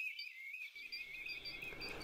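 Faint flight calls of a distant flock of European golden plovers: many plaintive whistles overlapping into one continuous, wavering high tone.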